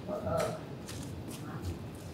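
A pause in a man's speech: a brief murmur near the start, then faint rustling with a few soft, sharp clicks.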